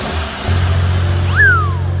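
Cartoon background music with sound effects: a steady low engine-like hum from the toy fire truck starts about half a second in, and a quick whistle rises and then falls a little after a second.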